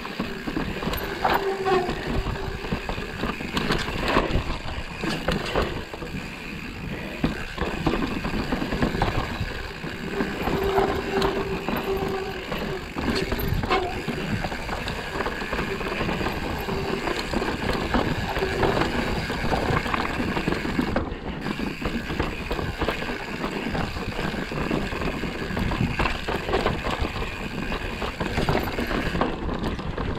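Mountain bike ridden over a rough dirt and stone trail: a continuous rattle of tyres and frame over the ground, full of small knocks and clatters.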